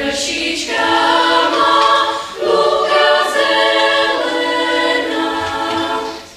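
Children's choir singing, held notes carried through with a short break for breath about two seconds in.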